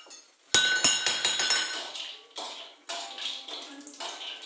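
Metal kitchen utensils and steel bowls clinking: a sharp clink about half a second in that rings on, followed by more clattering and scraping, with a spatula working in a frying pan near the end.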